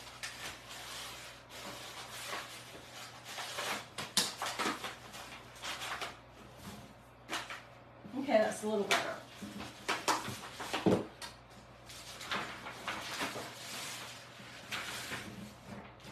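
Brown craft paper rustling and crinkling as it is handled and pressed down flat on a table, with scattered light knocks and taps. A brief murmured voice comes in about eight seconds in.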